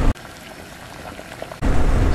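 Motorcycle riding noise on a helmet microphone, wind buffeting and engine, cuts out abruptly just after the start, leaving only a faint hiss with light crackle for about a second and a half, then cuts back in at full level.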